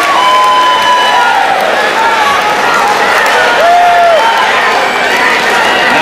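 Crowd in the stands cheering and applauding, with many voices shouting over a steady, loud din.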